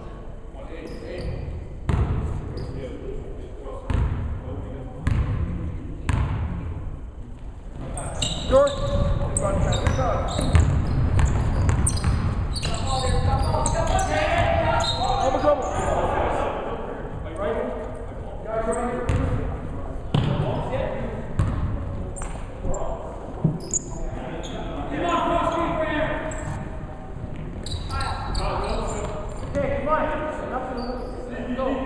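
Basketball bouncing on a hardwood gym floor, slow single bounces about a second apart for the first several seconds, then players and spectators calling out during play, echoing in a large gym.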